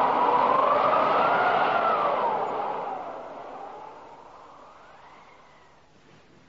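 Scene-change sound effect in a radio drama: a hissing rush with a faint whistle that slowly rises and falls. It is loud at first and fades away over the last few seconds.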